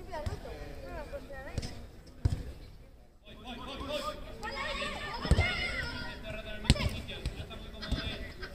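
Shouting and calling voices during a youth football match, with several sharp thuds of the ball being kicked; the loudest kicks come in the second half.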